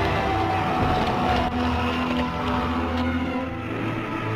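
Film soundtrack: a deep, steady rumble under dark sustained music.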